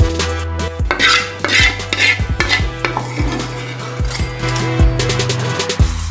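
Sauce-coated spaghetti and thick saffron cream sauce sliding out of a ladle onto a metal tray, with wet squelching mostly in the first half. Background music with a steady beat plays throughout.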